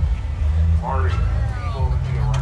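Marching band in the stands sounding low, sustained notes, with loud voices over it and a high, rising-and-falling shout or whoop about a second in.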